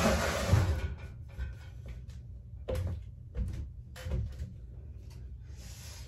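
A rustle and a thump about half a second in, then a few separate knocks: a step ladder being climbed and a black wire basket being handled and set against a high shelf.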